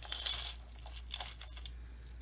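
Small bead charms clinking lightly against each other and the container as they are handled, a series of short, high clinks.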